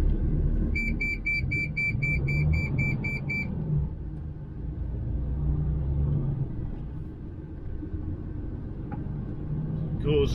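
DAF XF 530 truck's diesel engine heard from inside the cab while driving, its pitch rising and falling with the revs. Near the start, a quick run of high electronic beeps, about four a second for roughly three seconds.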